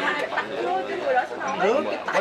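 Several people talking at once.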